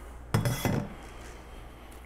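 Brief clatter of a glass mixing bowl being set down among kitchen dishes, about a third of a second in.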